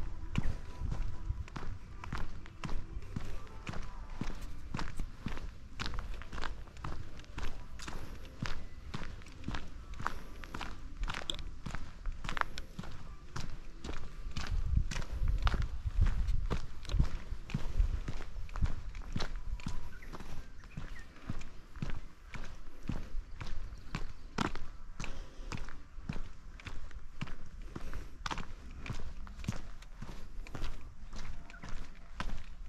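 Footsteps of a person walking at a steady pace on a paved footpath, a regular series of short scuffing steps, over a low rumble.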